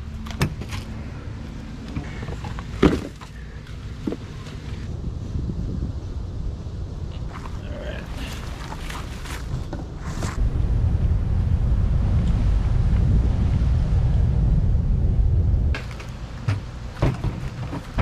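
Clicks and knocks of an RV's exterior compartment latch and hookup fittings being handled, over a steady low rumble. The rumble swells for about five seconds past the middle, then cuts off suddenly.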